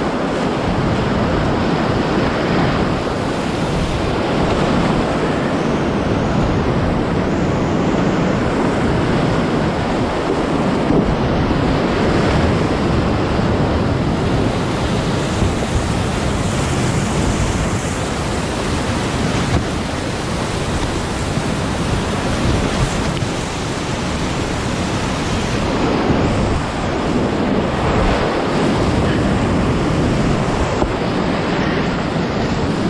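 Loud, continuous rush of high-water whitewater rapids, heard close up from the kayak as it runs the drops.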